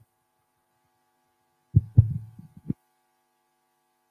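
A handheld microphone being handled and set down: a short cluster of dull low thumps about two seconds in, the last one near the three-second mark.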